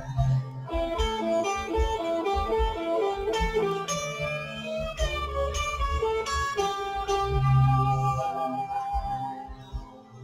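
Electric guitar (an Ibanez) playing a melodic picked line high on the neck, with bent notes gliding in pitch around the middle, over a backing track with low notes and beats underneath.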